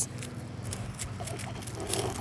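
A stick scratching and poking at dry dirt and pine straw: soft, irregular scrapes.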